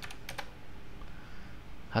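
A few quick keystrokes on a computer keyboard in the first half-second, typing a short stock ticker into a search box.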